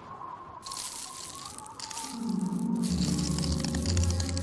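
Cartoon sound effect of ice forming, a crackling, glittering hiss that comes in under a second in, over the background score. Low sustained music notes build from about two seconds in.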